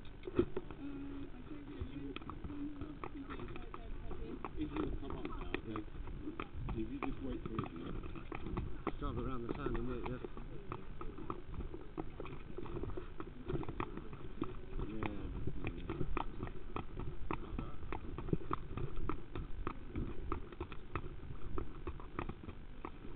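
A horse's hooves clopping irregularly, with muffled voices underneath.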